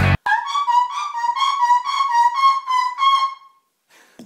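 Loud rock music cuts off at the start. A harmonica then plays a short, high tune, rapidly alternating between two close notes for about three seconds before stopping.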